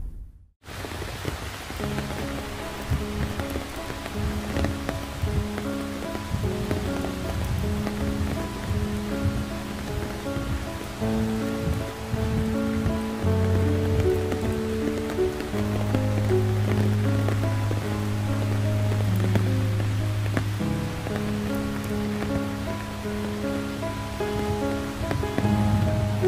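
Slow background music of long held notes and chords over the steady hiss of falling rain, beginning just after a short silence at the start.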